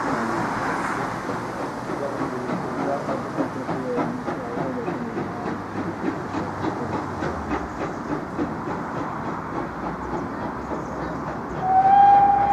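Steam trains moving slowly through the station: wheels clicking over rail joints and pointwork, with hissing steam from the LMS Black Five locomotive 45379 as it comes in. A steady whistle starts right at the very end.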